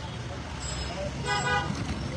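Road traffic running with a low rumble, and a vehicle horn honking once briefly a little past halfway.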